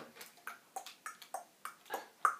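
A quick run of short, sharp taps, about three a second, each with a brief ringing note.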